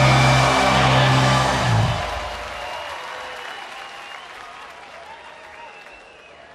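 A live rock band with electric guitars and drums plays its last chord, which stops about two seconds in. A large festival crowd then applauds and cheers, gradually fading.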